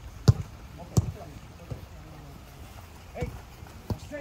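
Footballs being struck: sharp thuds of kicks on the ball, two about a second apart, then two more near the end, over faint voices.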